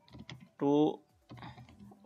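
Computer keyboard typing in short runs of keystrokes, with one short spoken word in the middle, the loudest sound.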